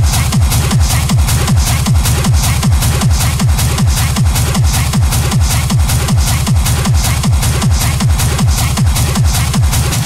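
Techno from a DJ mix: a steady four-on-the-floor kick drum at about two beats a second, each kick a falling low thud, with even ticking hi-hats above it.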